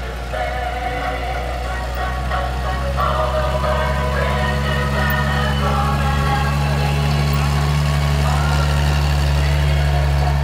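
M2 White half-track's inline-six engine running steadily as the vehicle drives past, getting louder about three seconds in as it comes closer. A song plays over it.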